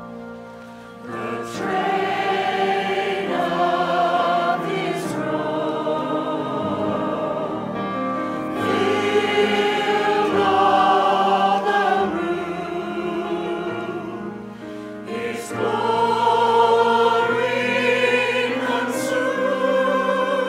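Mixed church choir singing a sacred piece in parts with piano accompaniment, phrase by phrase, with brief dips between phrases about a second in and again around fifteen seconds.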